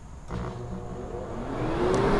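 Retrotec 1000 blower door fan spinning up toward a 93% speed setting: a rush of air that grows steadily louder, with a rising whine in the second half.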